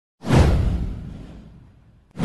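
A deep whoosh sound effect that swells quickly about a quarter second in, sweeps downward and fades away over about a second and a half.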